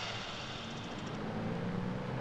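Street traffic: cars driving past, a low engine hum under even road noise.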